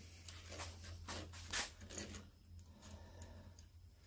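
Faint, scattered light clicks of a metal file gauge being handled and fitted onto a round chainsaw file, over a low steady hum.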